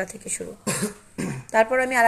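A person coughs once, a short noisy burst a little before the middle, followed by a voice speaking near the end.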